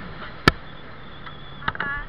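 Steady riding noise of a scooter on the road, broken by one sharp knock about half a second in and a smaller click with a brief squeak near the end.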